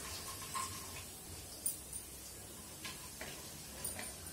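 Cumin and mustard seeds frying in a little hot oil in a wok, stirred with a wooden spatula: a faint sizzle with a few scattered small ticks and pops.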